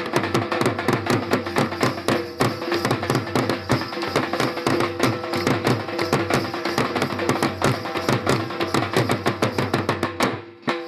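Punjabi dhol drums played in a fast, driving rhythm of dense, even strokes, dance accompaniment.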